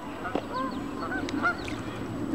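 Birds calling: several short, arched calls a fraction of a second apart over a faint background hum.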